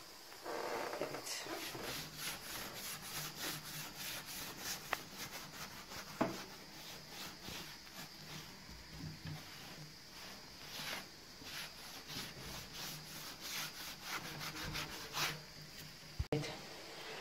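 Paint sponge rubbed over the painted wooden top of a nightstand in repeated short strokes, working the leftover gold paint into the white base coat for an antiqued finish, with a couple of light knocks.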